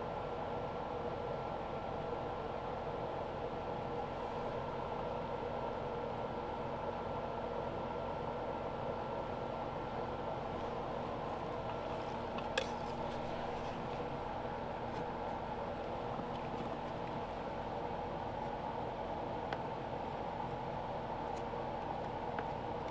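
Steady low background hum with a few faint steady tones running under it, and a single light click about halfway through.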